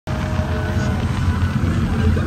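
Fireworks display going off overhead: a continuous low rumble of overlapping booms, with no single sharp bang standing out.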